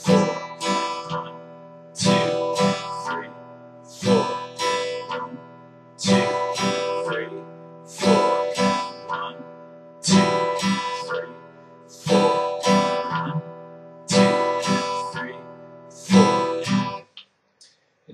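Acoustic guitar played slowly in the country strum (bass-strum) pattern on an E minor chord: the low sixth-string bass note picked on each odd beat, followed by a strum of the rest of the chord. The pattern repeats every two seconds and stops about a second before the end.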